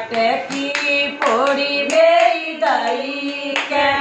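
Women singing a Krishna bhajan together, keeping time with hand claps.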